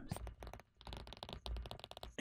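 Faint, rapid tapping and scratching of a stylus writing on a tablet.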